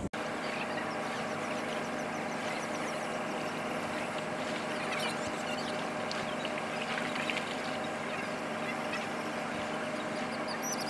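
A steady mechanical hum with several fixed tones, like an engine running nearby, with faint high chirping of small birds over it through the first few seconds.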